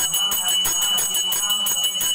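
Temple puja bell rung rapidly and continuously, its clapper striking many times a second over a steady high ringing.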